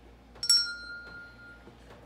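Small brass hand bell rung once: a single sharp ding that rings on and fades over about a second.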